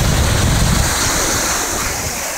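Ocean surf washing up the beach, with wind rumbling on the microphone.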